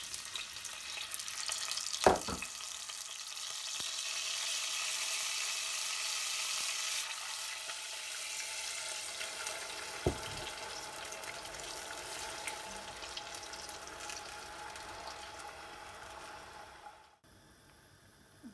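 Water poured into a pot of hot oil, whole spices and basmati rice, hissing and sizzling. The sizzle swells for several seconds, then slowly dies down as the water settles. Two sharp knocks of metal on the pot come about two seconds in and about ten seconds in.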